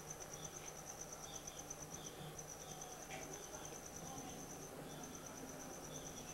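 Cricket trilling: a high, rapidly pulsed trill that breaks off briefly twice.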